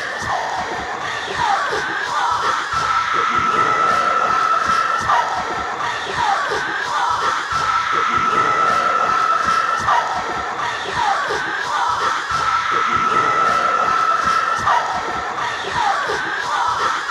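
Experimental electronic music: a dense noisy wash with a high steady tone that comes in for a couple of seconds about every five seconds, and short falling glides scattered through it.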